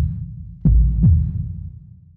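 Heartbeat-style sound effect of deep paired thumps, with a second pair about two-thirds of a second in, fading away toward the end.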